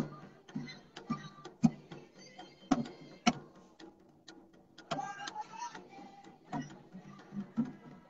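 Scattered, irregular taps and knocks on hand-held drums in a pause between tunes, with a brief pitched sound about five seconds in.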